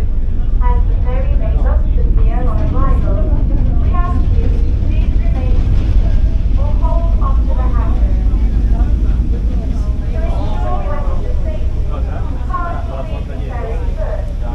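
Passenger ferry's engine running with a steady low rumble, heard from the open deck as the boat nears the pier, with people talking over it.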